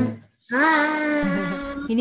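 The last acoustic guitar note dies away, then after a brief gap a person's voice holds one long sung note that slides up into pitch and then stays steady.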